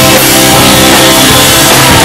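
A rock band playing live and loud: electric guitars and drum kit.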